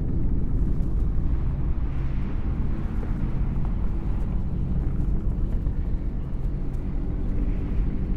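A deep, steady machine-like rumble in a dark ambient soundscape. It cuts in at the very start, with a low hum running beneath it.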